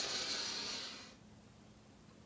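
A man's long, deep inhale taken to full lungs right after a round of kapalabhati (breath of fire), fading out about a second in.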